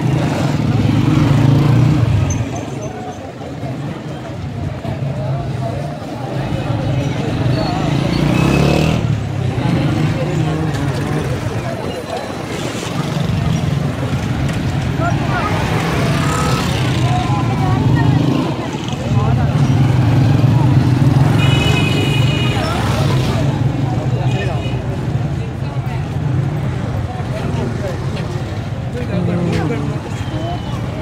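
Crowded market street: motorcycle engines running and passing close by, swelling and fading, over the chatter of many people.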